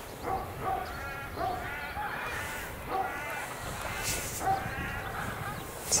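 A string of short pitched animal calls, one or two a second, over outdoor background noise.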